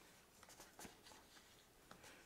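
Near silence, with a few faint scrapes of a bone folder burnishing a fold of paper.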